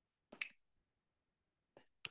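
Near silence broken by one short, sharp click about half a second in and a fainter click near the end.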